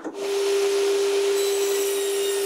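Table saw coming on just after the start and then running steadily, its noise carrying one constant tone.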